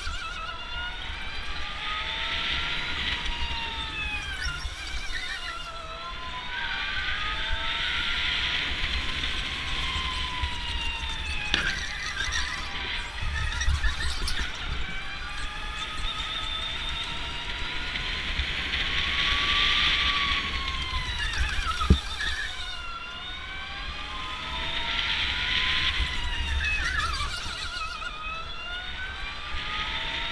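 Electric go-kart motors whining from the driver's kart and others on track, the pitch climbing and falling again and again as the karts speed up and slow for corners, over a low rumble from the tyres and chassis on concrete. A sharp knock comes about 22 seconds in.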